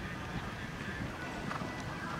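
Hoofbeats of a horse cantering on sand arena footing, a run of dull low thuds.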